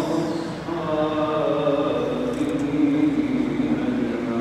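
A man's solo voice chanting an Arabic Islamic supplication through a microphone, holding long ornamented notes that slide slowly up and down in pitch.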